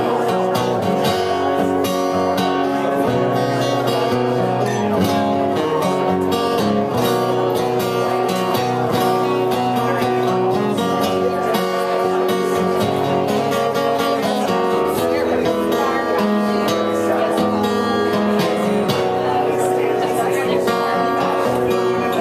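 Solo acoustic guitar strumming and picking chords in a steady rhythm, the instrumental introduction to a song before the vocal comes in.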